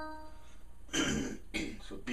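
A man clearing his throat about a second in, in two or three short rough bursts, while the echo of electric piano notes dies away at the start.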